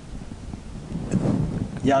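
A pause in conversation filled by a low, steady rumble of background noise. A man's voice murmurs softly about a second in, and speech picks up again near the end.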